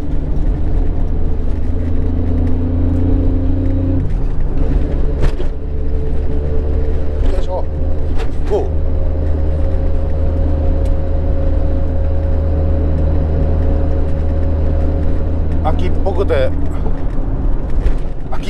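Nissan Skyline GT-R (R33)'s twin-turbo RB26 straight-six running steadily on the road, heard from inside the cabin as a low drone, its exhaust made gentler by an inner silencer. The engine note changes about four seconds in.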